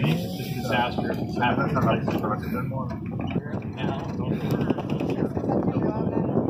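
People talking over the steady low rumble of a car driving on beach sand.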